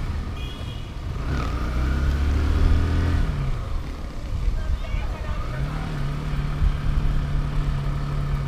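Kawasaki Bajaj Rouser motorcycle's single-cylinder four-stroke engine running under way: it pulls up from about a second in, eases off a little after three seconds, then picks up again with a steadier, higher note near the six-second mark.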